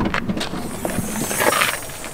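The tailgate of a Honda minivan being unlatched and lifted open: a sharp latch click, a string of small mechanical clicks and rattles, and a brief rushing hiss about one and a half seconds in.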